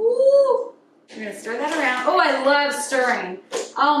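Mostly a person's voice: a short hummed tone at the start, a brief pause, then about two seconds of sing-song vocal sound, and an 'oh' near the end.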